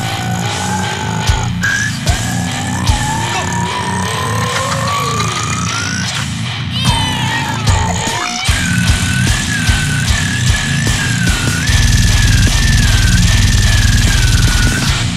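Extreme metal (goregrind) track: heavy, distorted band playing, with long high gliding tones over the top. About twelve seconds in it gets louder, with a very fast low pulse.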